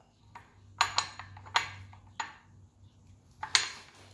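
A handful of sharp metallic clinks as a new steel crankshaft sprocket is worked onto the crankshaft nose, metal knocking against metal, the loudest near the end.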